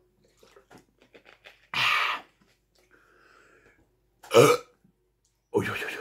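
A man swallowing a soft drink from a plastic bottle with small gulping clicks, then a loud breathy burst about two seconds in and a loud, deep burp a little past four seconds.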